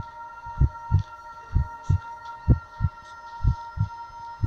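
Heartbeat sound effect: low paired lub-dub thumps, about one pair a second, over a steady high hum.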